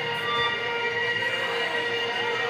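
A sustained drone of several held steady tones from the band's amplified stage sound between songs, with faint crowd chatter underneath.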